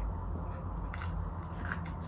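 A person biting and chewing a whole onion close to the microphone, with sharp crunches about a second in and twice near the end.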